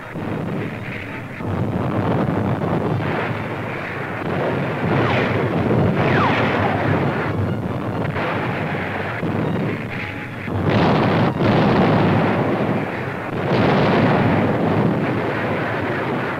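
Artillery fire and shell explosions on an old newsreel soundtrack: a dense, continuous rumble with heavier blasts about eleven and fourteen seconds in.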